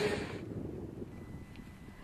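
Noise of a passing freight train that cuts off within the first half second. What is left is faint outdoor quiet: a low rumble, with a faint steady high tone from about a second in.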